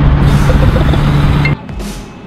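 Loud road and wind noise inside a moving Mazda car, a steady rush with a low hum, which cuts off suddenly about one and a half seconds in.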